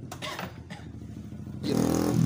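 A motorcycle engine running in the background, low at first, then much louder about a second and a half in.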